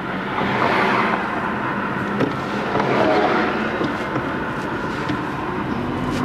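Car driving on a city street: steady engine and road noise heard from inside the car, swelling a little as traffic passes.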